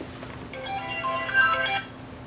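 A short melodic electronic tone, like a mobile phone ringtone or notification, playing a quick run of notes for just over a second and then cutting off.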